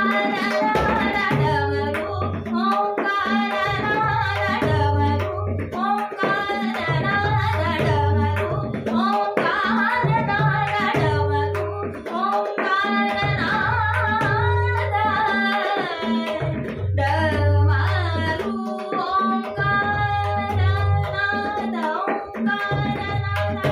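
Woman singing a Marathi natyageet in raga Todi, her voice moving through ornamented melodic lines, accompanied by tabla playing Ektal with regular deep bayan strokes, over a steady drone.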